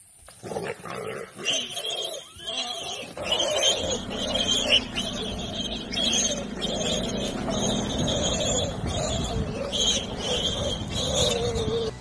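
Wild animals fighting in dense bush: continuous rough growling with repeated high-pitched squeals over it. It starts suddenly and cuts off abruptly at the end.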